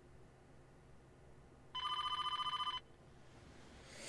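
A telephone rings once, a single trilling ring about a second long starting near the middle, with faint room tone either side.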